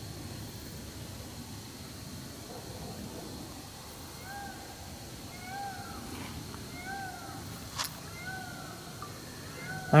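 An animal calling five times, short calls that rise and then fall in pitch, about one every second and a half from about four seconds in. A faint steady high tone runs underneath, and there is a single sharp click between the last calls.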